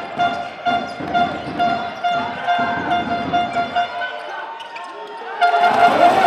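Live basketball game sound: the ball bouncing on the court under a horn tooting over and over in a steady pulse, with crowd noise swelling louder near the end.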